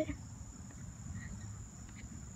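A steady, high-pitched insect trill, one unbroken tone, with a low rumble underneath.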